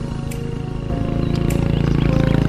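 Small underbone motorcycle's engine running as it rides up close, growing louder as it nears, with background music.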